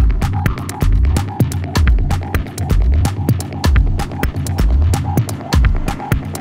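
Techno played from vinyl on DJ turntables: a deep, regular kick-drum beat with fast ticking percussion over it and a short repeated mid-pitched note.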